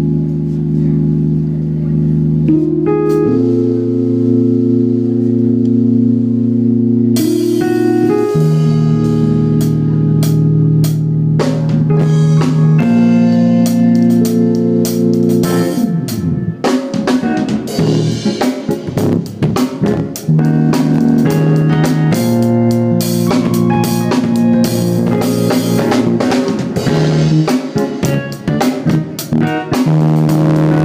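Live keyboard and drum kit jam: sustained organ-style chords at first, with the drum kit coming in about seven seconds in, snare and cymbals, then the two playing a groove together.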